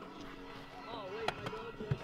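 Faint voices, with a few light clicks and knocks from someone moving at an open car door, the sharpest late on.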